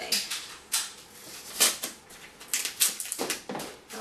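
Masking tape being pulled off the roll, torn and pressed across the top of a cardboard oatmeal canister: a string of short ripping and crinkling sounds, the loudest about one and a half seconds in.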